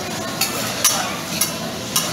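Two metal spatulas chopping and scraping fried rice on a hot steel teppanyaki griddle, the food sizzling steadily. Sharp clicks of metal on steel come about twice a second, four in all.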